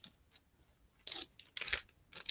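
Clear plastic record sleeve rustling as an LP in its cardboard jacket is handled and slid out, in two short bursts starting about a second in.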